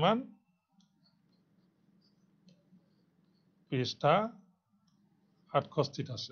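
A man's voice speaking a few short words in a small room, with a faint steady low hum and a few faint clicks in the pauses between them.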